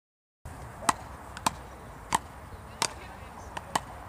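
Frescobol rally: a ball knocked back and forth between two paddles, a sharp knock about every two-thirds of a second, with a couple of quick double knocks. The sound starts suddenly about half a second in, after silence, over steady outdoor background noise.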